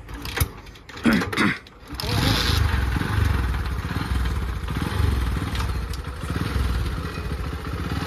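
Motorcycle engine coming in suddenly about two seconds in, then running steadily and loudly.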